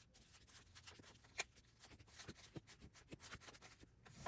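Faint rustling and soft taps of paper dollar bills being handled and laid down one by one into piles on a table, with one slightly sharper tap about one and a half seconds in.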